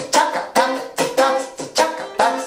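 Soprano ukulele strummed in a cutting rhythm: short chords alternating with muted, percussive chops made by touching the strings to stop them, about three strokes a second.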